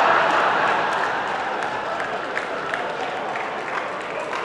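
A large audience applauding and laughing, loudest at the start and slowly dying down.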